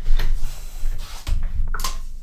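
A few dull knocks and rubbing noises over a low rumble, the kind made when a desk, chair or the microphone is bumped and handled.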